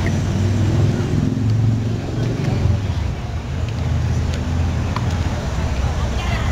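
Low rumble of a vehicle engine in a busy street, with voices in the background and a few light clicks.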